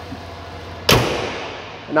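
The hood of a 2018 GMC Yukon dropped shut about a second in: one sharp bang that rings on and fades over about a second.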